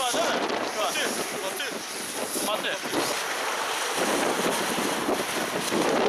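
Gusty wind from a force-7 lodos (southwesterly) gale buffeting the microphone over choppy, wave-tossed harbour water.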